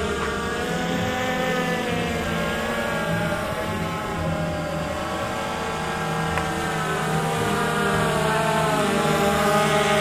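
DJI Phantom 2 Vision+ quadcopter's four electric motors and propellers running as it hovers low. The whine has several pitches at once that waver as the rotors change speed, dipping a little around the middle and rising toward the end.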